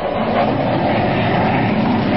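Sound effect of an airplane in flight: a steady, loud engine drone with a low hum underneath.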